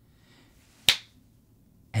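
A single sharp finger snap about a second in, against quiet room tone.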